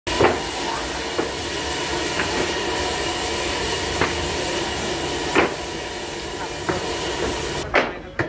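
Sawmill band saw running, a steady loud hiss of the blade and machinery with a few sharp knocks at irregular moments. The noise drops off suddenly just before the end.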